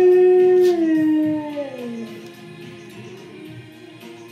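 A dog howling: one long howl held at a steady pitch, then sliding down and fading out about two seconds in.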